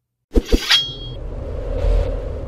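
Logo sound effect: two quick sharp knocks, then a short bright metallic ring, followed by a steady low rumble.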